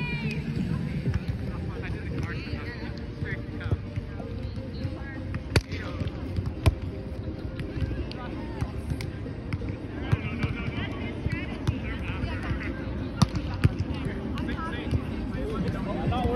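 A volleyball being struck with the hands a few times in play, heard as sharp slaps: two about halfway through and two more a little later, over distant voices and a steady outdoor background.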